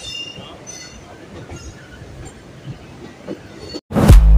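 Train running on the track, heard from an open coach doorway: a steady rumble of wheels and rails, with brief high-pitched wheel squeals in the first second or two. The sound cuts off abruptly just before the end.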